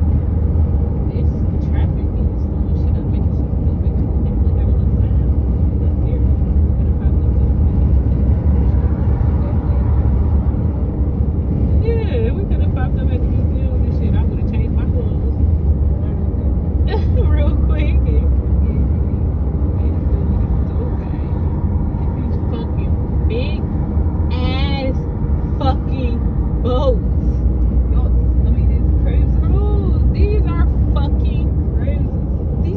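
Steady low rumble of road and wind noise from a car driving at speed, heard from inside the car, with voices coming and going over it.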